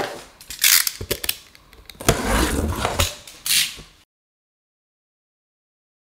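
Cardboard shipping box being opened by hand: several noisy bursts of tearing, scraping and rustling packaging with a few sharp clicks, ending abruptly about four seconds in.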